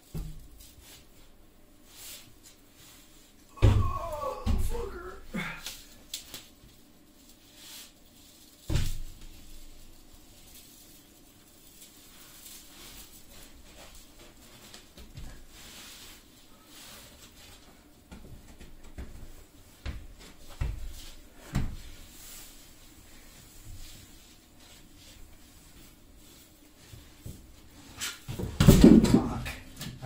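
Large sheet of cement backer board being handled and set down over a mortar bed on a plywood subfloor: scattered knocks and thumps with scuffing, the loudest cluster near the end.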